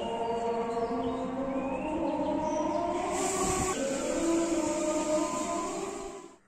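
Several chanting voices over loudspeakers at once, their long held and gliding notes overlapping at different pitches, as from more than one mosque broadcasting recitation during a night of worship.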